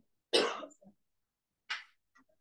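A person coughing: one loud, abrupt cough about a third of a second in, and a shorter, quieter burst near the end.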